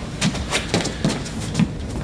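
Irregular scuffs, rustles and knocks of two people grappling through a wrist-grab takedown: clothing brushing and feet shifting, about a dozen sharp knocks in two seconds.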